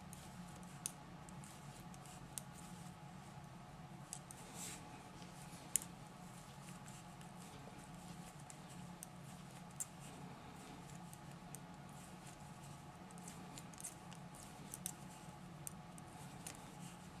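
Knitting needles clicking faintly and irregularly as stitches are worked, over a steady low hum.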